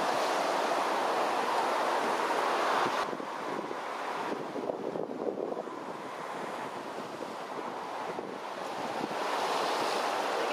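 Ocean surf washing over and breaking against a rocky reef, with wind on the microphone. The wash drops off abruptly about three seconds in and builds again near the end.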